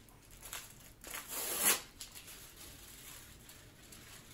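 Aluminium foil crinkling and tearing as it is peeled off a paper-wrapped roll of silk just out of the steamer, in a few soft rustles, the loudest just under two seconds in.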